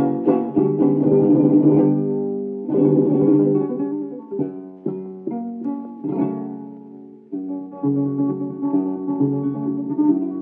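Flamenco guitar playing a solo introduction, strummed chords and picked runs with a short pause about two seconds in, on a 1952 disc recording with a narrow, dull top end.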